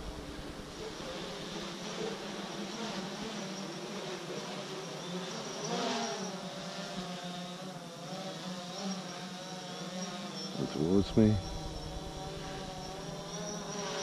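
DJI Phantom 4 quadcopter flying overhead in sport mode: a thin propeller buzz whose pitch wavers up and down as the motors change speed.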